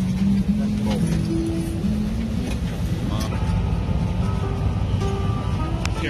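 Steady low rumble of an airliner cabin's engine and air-conditioning noise. Background music comes in about halfway through.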